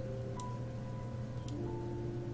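Quiet background music: slow, sustained notes that change pitch about once a second, over a low steady hum.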